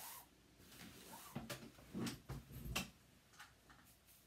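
A few faint, irregular taps and light knocks from small things being handled and set down on a desktop while crumbs are brushed up by hand.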